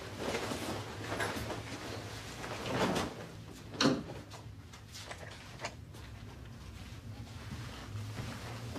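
A man taking off and hanging up his coat indoors: fabric rustling and handling noises, with a sharp knock just before four seconds in and a smaller click later. A low steady hum runs underneath.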